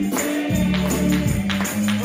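Gospel song: a young girl's solo voice over accompaniment with a bass line and tambourine on a steady beat.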